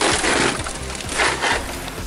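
Underbody shield plate with a crinkled foil-and-foam lining scraping and rustling against the car's underside as it is pulled out, with two louder scrapes, one at the start and one just past a second in.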